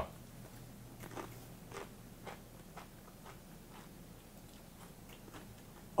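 Faint crunching of a tortilla chip being chewed. It starts about a second in, at about two crunches a second, and grows fainter.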